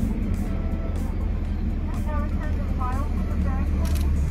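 Steady low rumble of a car idling, heard from inside the cabin. In the second half a quick run of about five short, high chirps sounds over it.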